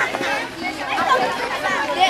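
A crowd of children chattering and calling out at once, many voices overlapping with no single voice standing out.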